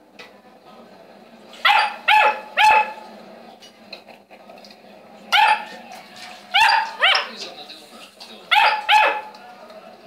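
Saint Bernard puppy barking: eight short, high yaps in three bursts, three about two seconds in, three around the middle and two near the end.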